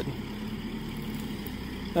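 A steady low hum, with a faint even tone in it, under the pause in talk.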